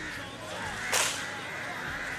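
A single sharp crack about a second in, over steady background noise.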